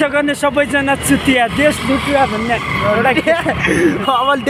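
A man's voice, with one note held for about a second midway, over street traffic noise.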